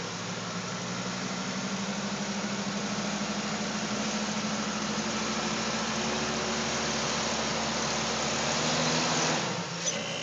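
Jeep Cherokee XJ's engine running steadily under load as the Jeep crawls up a rock ledge, slowly getting louder, then dropping off suddenly near the end as the throttle is let off.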